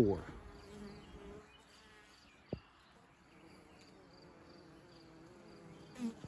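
Faint buzzing of honey bees flying around the entrance of a hive box holding a newly caught swarm. There is a single short tap about two and a half seconds in.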